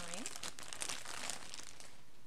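Thin clear plastic packaging bag crinkling as a rolled fleece blanket is pulled out of it, the crackle dying away near the end.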